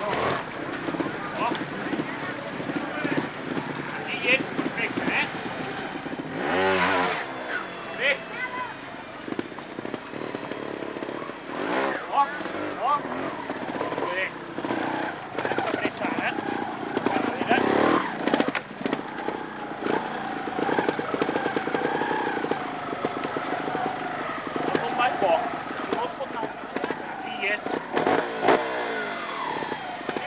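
Two-stroke Gas Gas trials motorcycle blipping its throttle in several short revs as it clambers over rocks, over a steady murmur of spectators' voices.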